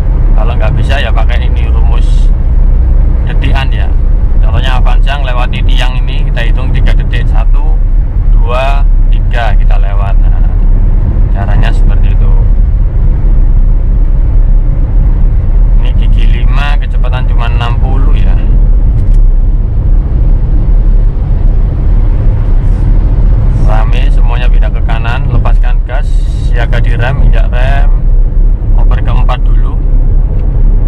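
Cabin noise of a Suzuki Karimun Wagon R cruising on a highway: a steady, loud low rumble of engine and road noise, with a voice heard off and on over it.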